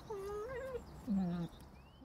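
A dog whining: two drawn-out, wavering whines, the second starting lower, about half a second after the first ends.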